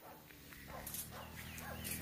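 Faint outdoor ambience with a few brief, distant animal calls.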